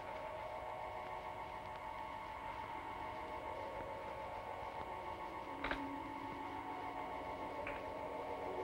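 Eerie background music of several held tones whose pitches shift slowly, with a faint click about halfway through.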